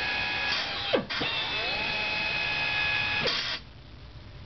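Ingersoll Rand 8255 self-feed drill running through a peck feed drilling cycle: a steady whine falls in pitch and cuts out briefly about a second in, spins back up with a rising pitch, runs steady, then stops shortly before the end.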